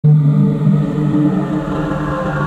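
Intro sound effect for an animated logo reveal: a low, droning rumble with steady held tones that starts abruptly, building into intro music.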